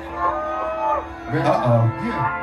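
A person's voice held in one long, arching call, then a couple of short vocal sounds, over a steady low hum.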